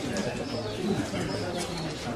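Indistinct voices of a gathering of mourners, several people speaking softly at once, with no words standing out.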